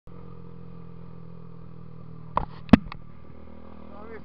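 Dafra Next 250's single-cylinder engine running steadily while the motorcycle is ridden. A little past halfway there are two sharp knocks close together, the second the loudest sound.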